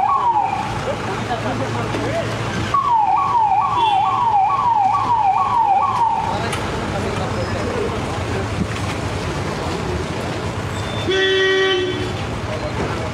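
Electronic vehicle siren sounding a quick falling whoop repeated about twice a second, briefly at the start and again for about three and a half seconds from a few seconds in. Near the end a car horn toots once for about a second.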